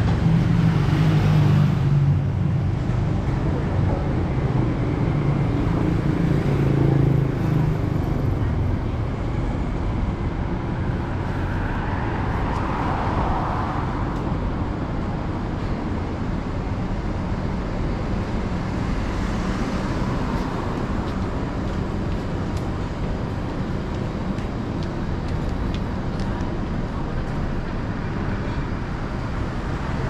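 City street traffic: a steady wash of road noise from passing cars, with a vehicle's engine rumbling louder for the first several seconds.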